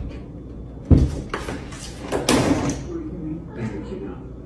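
A cat hanging on a lever door handle pulls it down: the latch releases with a sharp thump about a second in and the door swings open, followed by a couple of seconds of rattling and knocking.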